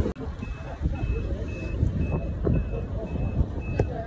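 A vehicle reversing alarm beeping, a single high tone repeating about twice a second, over a low background rumble.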